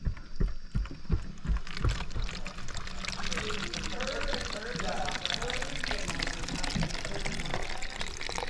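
Water running from an outdoor metal spigot into a plastic bottle, a steady pouring splash. There are a few low bumps in the first two seconds.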